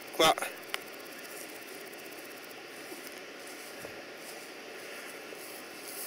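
A single short spoken word at the very start, followed by a sharp click, then steady faint background noise with nothing else standing out.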